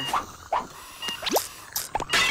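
Cartoon sound effects: a handful of short blips, each gliding quickly upward in pitch, with a longer rising sweep just past the middle.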